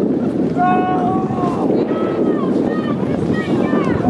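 Wind buffeting the microphone in a steady rush, with a high-pitched voice calling out several long, drawn-out shouts over it.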